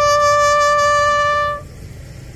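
Solo trumpet holding one long note, which stops about one and a half seconds in.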